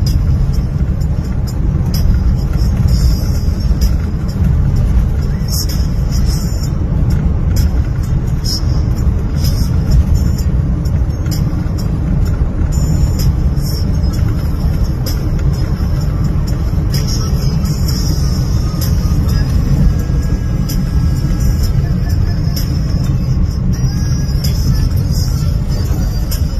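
Steady low road-and-engine rumble of a vehicle driving on a rough road, heard from inside its cabin, with scattered light clicks and rattles.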